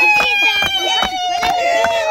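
Hand claps keeping a dance beat about three times a second, under a long, high, held note that slowly falls in pitch.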